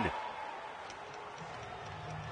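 Faint hockey rink ambience: a low hiss with a few light clicks near the middle.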